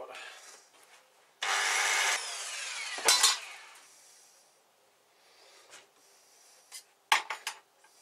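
Steel being worked by hand at a metal workbench: a harsh scraping of metal lasting about a second and a half, with a falling whine at its end, then a couple of sharp metal knocks. Near the end comes a quick run of sharp metallic clicks.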